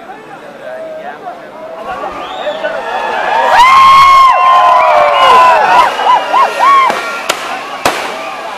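Temple-festival fireworks set piece being lit: a swelling hiss and crackle that peaks about four seconds in, with shrill tones rising and falling over it. A few sharp bangs follow near the end.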